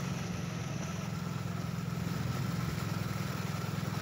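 An engine idling steadily, with a low hum and a fast, even pulse.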